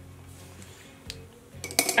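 Quiet background music with steady low notes, and a quick run of light clicks and clinks near the end as makeup items are handled.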